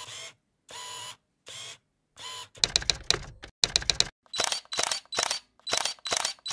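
Clicking mechanical sound effects over an animated logo: four separate clicks spaced well apart, two quick runs of rapid clicks in the middle, then a steady series of clicks about three a second.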